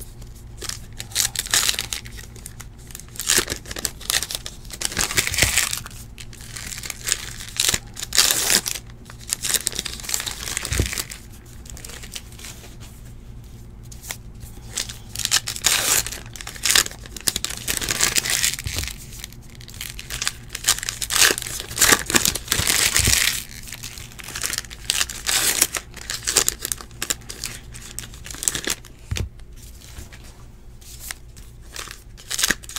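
Topps Heritage baseball card pack wrappers being torn open and crinkled by hand, in repeated bursts of crackling.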